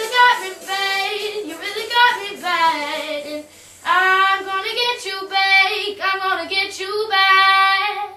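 An 11-year-old girl singing solo, with a short break about three and a half seconds in; her voice stops at the end.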